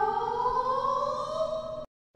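A single long pitched tone that rises slowly in pitch, then cuts off abruptly near the end.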